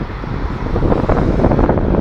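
Wind buffeting the microphone, a loud low rumble, with city street traffic underneath.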